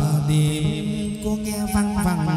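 Hát văn (chầu văn) ritual singing: a voice holding long notes that bend and step in pitch, over instrumental accompaniment.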